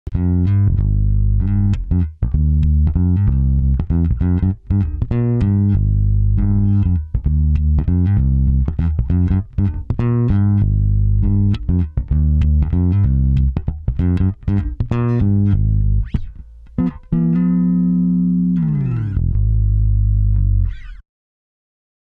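Sandberg California electric bass played through a Glockenklang bass amp: a fast, funky line of plucked notes with sharp, percussive attacks. It closes on a held low note that stops abruptly about a second before the end.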